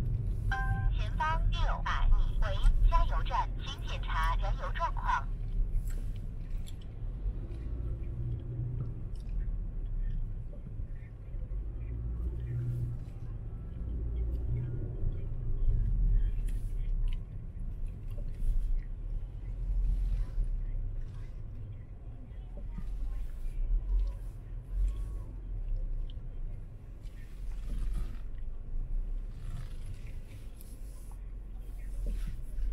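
Car driving slowly along a street: a steady low rumble of engine and road noise. Near the start, a voice with a pitched, sing-song quality is heard for about four seconds.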